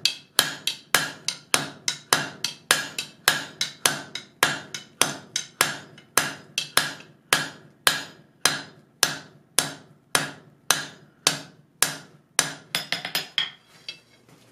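Blacksmith's hammer striking hot steel flat stock over the anvil horn, drawing the bar down with steady blows about three a second, each with a short metallic ring. Near the end come a quicker run of lighter taps, then the hammering stops.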